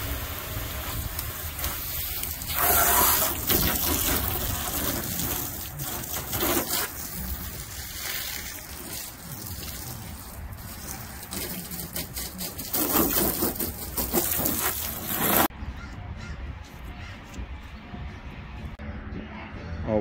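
Water spraying from a handheld hose nozzle onto a car's paint, a steady hiss with louder bursts as the spray hits the panels; about fifteen seconds in it stops abruptly, leaving a quieter low background.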